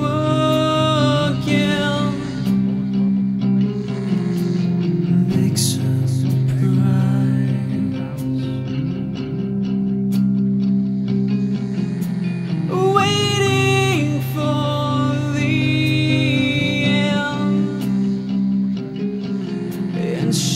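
Alternative metal song: guitars and bass play steadily under sung vocals, which come in near the start and again around two-thirds of the way through.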